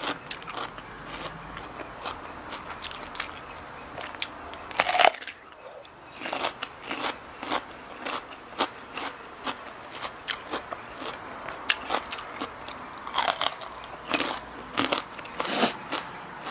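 Close-up crunching of a raw red radish being bitten and chewed: a rapid run of crisp crunches, with a few louder bites, one about five seconds in and two more near the end.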